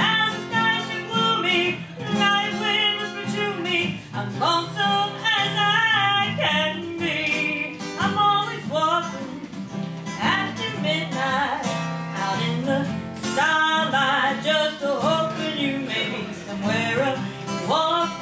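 A woman singing a slow country song with a wavering vibrato, accompanied by a strummed acoustic guitar.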